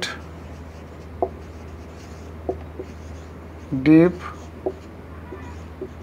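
Marker pen writing on a whiteboard: faint scratching strokes with a few short ticks of the tip against the board.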